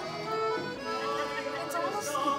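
Accordion playing sustained chords, the accompaniment between a gondola singer's sung phrases.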